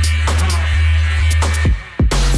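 Background electronic music with a deep steady bass and sharp drum hits. It cuts out briefly near the end, just before a different beat starts.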